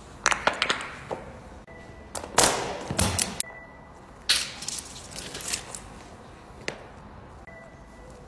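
Sneaker stepping on a silicone pop-it fidget toy, popping its bubbles in a quick run of sharp pops. Then mesh stress balls are squashed underfoot, with two longer crunching bursts, the louder one a couple of seconds in.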